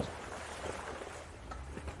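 Jeep Gladiator Rubicon driving slowly through a shallow river: a low, steady engine rumble under an even hiss of noise.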